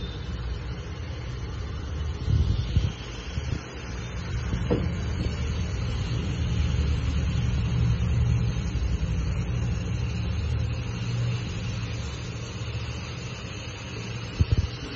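Food frying in a pan as chopped tomatoes are tipped in and stirred with a silicone spatula, over a steady low rumble; a short burst of louder knocks comes about two to three seconds in.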